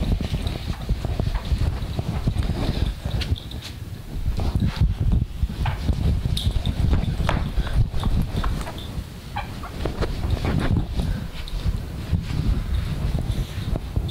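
A cloth eraser rubbing across a whiteboard to wipe it clean, with many scattered short knocks and clicks over a steady low rumble.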